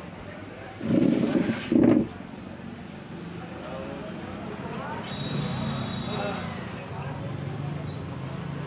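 Indistinct voices of people talking in the background, with two loud bursts about a second in and a faint steady high tone for a second or so past the middle.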